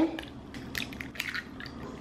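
Eggs being cracked by hand into a plastic mixing bowl: a few soft shell cracks and the wet drip and plop of egg falling into the bowl.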